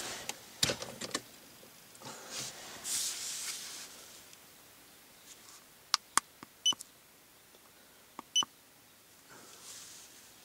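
iCarSoft i910 handheld scan tool being handled and its keypad pressed: a knock and some rustling, then a cluster of sharp clicks and short high beeps about six seconds in, and two more near eight and a half seconds.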